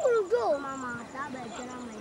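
Players and spectators shouting and calling out during an amateur football match: several overlapping voices with cries that swoop up and down in pitch, one drawn out and falling in the second half.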